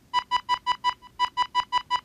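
Roland Zenbeats sequencer-synth loop playing a quick run of short, clipped notes, all on one high pitch, about five a second, in a choppy Morse-like rhythm.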